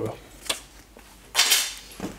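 Handling sounds as a paperback book is carried to a bed and laid on the duvet: a single sharp click about half a second in, then a short rustle lasting about half a second.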